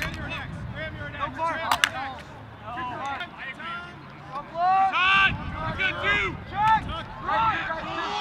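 Lacrosse players and sideline teammates shouting short calls during play, several voices overlapping, with one sharp clack a little before two seconds in.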